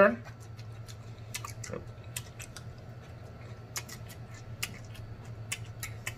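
Close-miked eating: chewing a forkful of cabbage and salad, with many scattered short sharp mouth and fork clicks over a low steady hum.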